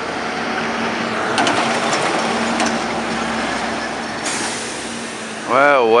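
City street traffic noise with a vehicle engine running steadily underneath as a low, even hum, and a couple of faint ticks in the first half. A man's voice starts just before the end.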